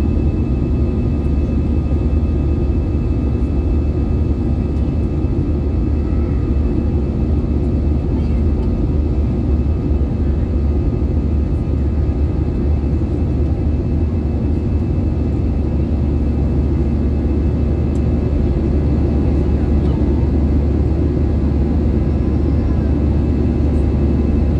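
Steady cabin noise inside an Airbus A320neo in flight: a constant low rumble of the engines and airflow past the fuselage, with a few faint steady tones above it.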